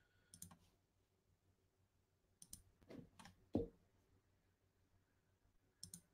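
Near silence broken by a few scattered faint clicks and taps at a computer, the loudest a soft knock about three and a half seconds in.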